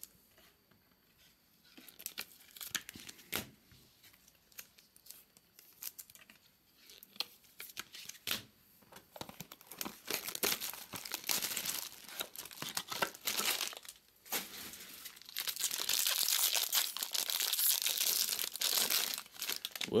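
Foil wrapper of a 2022 Bowman Inception trading-card pack being handled and torn open. Scattered crinkles come first, then sustained tearing and crinkling about halfway through and again through the last few seconds.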